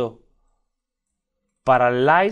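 A man speaking Spanish: a word ends just at the start, and he speaks again from about one and a half seconds in, with dead silence between.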